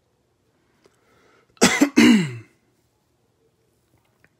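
A man coughing to clear his throat: two harsh bursts back to back about a second and a half in, the second trailing off in a voiced sound that falls in pitch.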